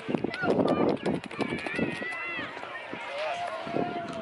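Wind buffeting the microphone, then wordless vocal sounds in place of an answer: a few high, curving glides, and near the end a drawn-out, wavering hum.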